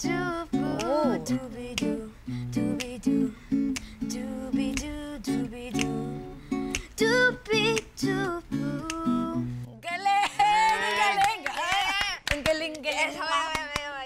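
A boy scat-singing short improvised syllables like "doobie-doo" over steady strummed guitar chords. Near ten seconds in the guitar stops and several voices call out excitedly.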